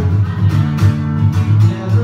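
Acoustic guitar strummed in a steady rhythm, with no singing.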